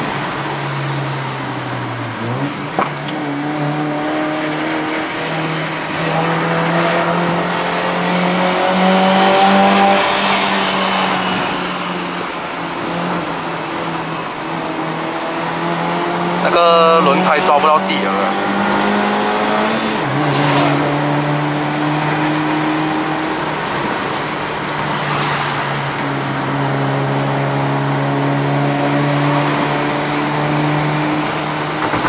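Honda City's 1.5-litre i-VTEC four-cylinder engine heard from inside the cabin, pulling hard at high revs on a climb; its pitch rises steadily through a gear, then drops sharply at an upshift about 20 s in, with a brief dip about 2 s in.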